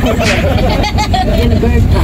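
Steady low engine and road rumble inside the cabin of a moving passenger vehicle, with people's voices over it.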